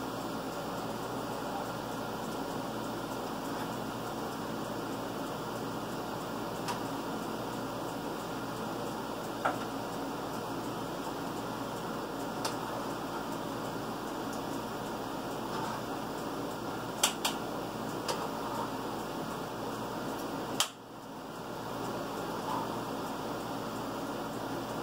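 Steady fan-like hum of room noise, with a few light clicks and knocks of things handled at a kitchen counter; after a sharper click near the end the hum drops away and slowly swells back.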